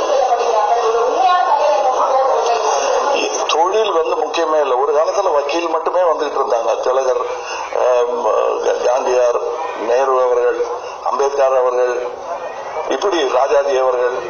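Speech only: a man talking into a handheld microphone.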